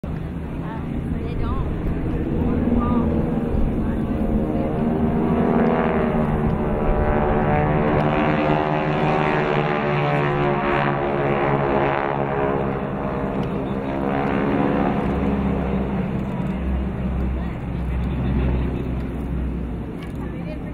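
Two T-6 Texan-type propeller trainers flying over in formation, their radial engines droning together. The engine note swells toward the middle and its pitch shifts as they pass, then eases off near the end.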